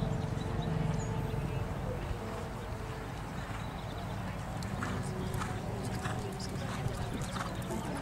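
A dressage horse's hoofbeats in an even rhythm of about two steps a second. They stand out clearly from about five seconds in, over a steady low background hum.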